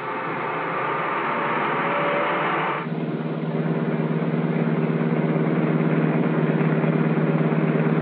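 Motor coach cruising on a highway: a rushing road-and-wind noise for about the first three seconds, then it changes abruptly to a steady, fluttering engine drone.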